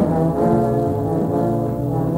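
Jazz big band with a brass section of trumpets, trombones and tuba playing a full chord that enters at the start and is held, over a moving low bass line.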